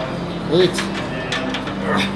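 Metal plates of a gym machine's weight stack clinking a few times as a rep is pulled, heard under a spoken rep count.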